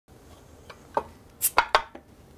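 Glass beer bottles clinking against each other and the wooden carrier as one bottle is pulled out of a six-pack caddy: a handful of sharp clinks, the loudest three close together in the second half.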